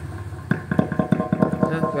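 Wireless karaoke microphone held close to a loudspeaker driven by an MD9840 amplifier board with DSP anti-feedback. Instead of building into a howl, the loop comes through as a rapid stutter, about seven short pulses a second, starting about half a second in.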